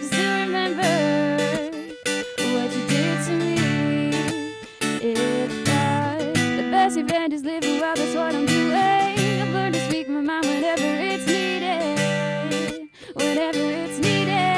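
A female singer performing a song live to her own strummed acoustic guitar, with a brief break in the sound about a second before the end.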